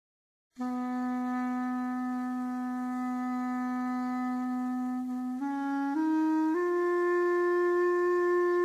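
Solo clarinet entering after a brief silence and holding one long low note for about five seconds, then rising in three short steps to a higher sustained note.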